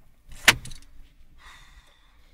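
A single sharp click inside a car cabin about half a second in, followed by a short light rattle and, near the end, a faint brief hiss.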